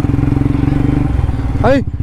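Motorcycle engine running steadily as the bike rides along, with a fast, even pulse. A man's voice calls "ay" near the end.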